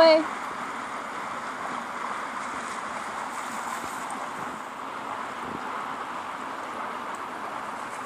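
Running water from lake runoff, a steady rush.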